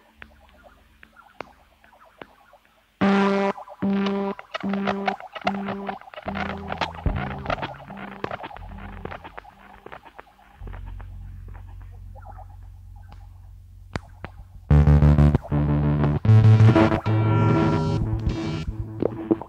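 Industrial band playing live. A quiet repeated pitched figure gives way about three seconds in to a loud riff pulsing about twice a second. A low drone joins near the middle, and a louder, denser passage with heavy bass takes over near the end.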